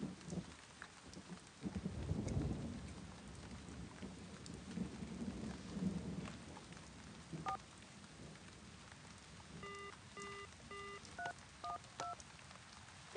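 Steady rain with a low rumble of thunder a couple of seconds in. Later, a series of short cell-phone keypad beeps, first one, then three evenly spaced, then three quicker ones, as the phone is worked to call up voicemail.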